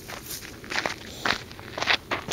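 Footsteps through tall grass and low plants close to the microphone, three steps about half a second apart.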